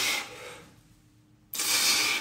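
Two forceful exhales blown out through pursed lips while flexing: a short puff at the start, then a longer, louder one about a second and a half in.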